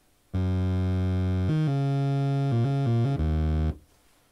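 Yamaha TG77 FM tone generator playing a short line of about six low notes on a single self-feedback operator, a tone very close to a sawtooth. The first and last notes are held; the middle ones change quickly. It starts and stops abruptly.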